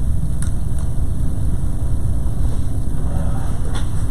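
Steady low rumble of background room noise, with two faint clicks about half a second and a second in.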